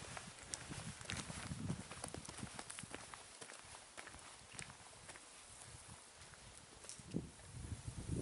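Footsteps on a loose stony path, faint and irregular, growing quieter as the walker moves away.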